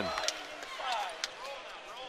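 Basketball game sound on an indoor court: a ball being dribbled on the hardwood, with faint crowd voices in the arena.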